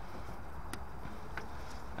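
Two faint, short clicks over a steady low background rumble, as the replacement flow NTC sensor clip and its plug are pushed back onto the boiler's flow pipe.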